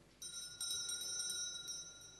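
An electronic ringing tone, several steady high pitches together with a fast flutter, starting just after the pause begins and fading near the end, like a phone ringtone or electronic chime going off in the room.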